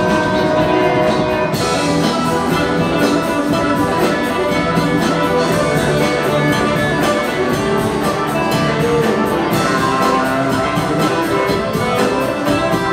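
Live band music: an electric guitar played on a sunburst hollow-body archtop, over drums keeping a steady cymbal beat.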